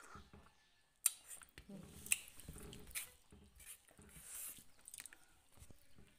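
Quiet chewing and mouth sounds of people eating, soft scattered clicks and smacks starting about a second in.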